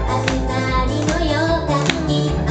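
A woman singing an upbeat pop song live into a microphone over loud accompaniment with a bass line and drum hits.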